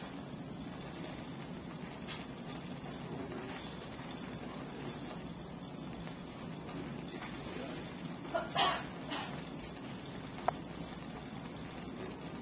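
Breath blown in short puffs onto smouldering paper to bring it to flame. A few faint puffs come first, then two stronger ones about eight and a half seconds in. Behind them runs the steady low rush of a lit Bunsen burner, and a single sharp click comes about ten and a half seconds in.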